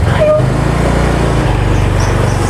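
Small motor scooter's engine running, a low steady hum that shifts in tone about one and a half seconds in.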